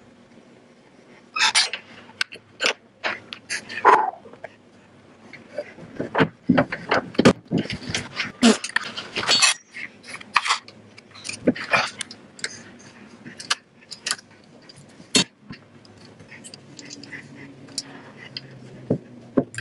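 Irregular clicks, knocks and rattles of metal air-line fittings, rubber hoses and a metal mounting plate being handled as an air brake manifold is connected and fitted into a truck's dash.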